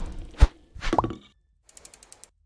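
Animated-logo sound effects: a sharp hit about half a second in, then a short swoosh with a rising whistle-like glide about a second in, then a few faint quick ticks near the end.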